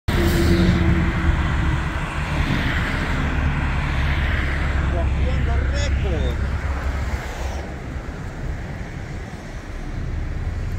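Highway traffic: a vehicle's engine and tyre noise swells and then fades away over the first seven seconds or so, over a steady low rumble.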